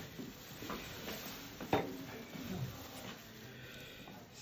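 Quiet room with small handling sounds of surgical instruments and suture, including one sharp click a little under two seconds in.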